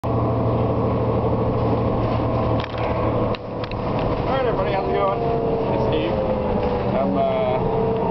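Steady drone of a city bus's engine and road noise heard from inside the passenger cabin, with a few rattles and knocks about three seconds in.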